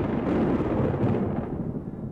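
Thunder rumbling and slowly dying away.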